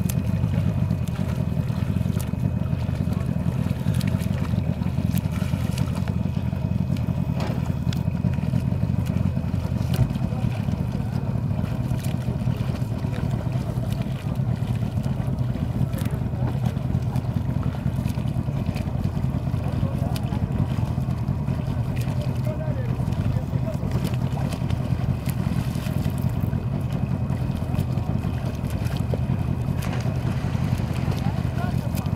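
A boat's motor running steadily, a constant low drone with no change in speed.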